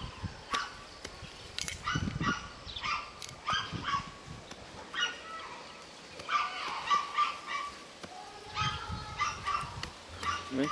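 A dog yipping and whimpering repeatedly in short high calls, a couple a second in bursts. A few dull chops of a machete into a green coconut's husk sound underneath.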